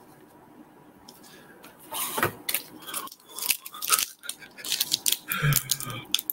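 Crinkling and crackling of a Pokémon card booster-pack wrapper and cards being handled. It starts as a quiet pause, then becomes a dense run of sharp crackles about two seconds in.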